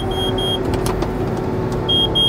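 Claas Jaguar forage harvester running, heard from inside the cab as a steady machine drone with a held hum. Three short, high electronic beeps from the cab sound at the start and again near the end. The metal detector has stopped the intake, and the feed rollers are being reversed to throw out the metal.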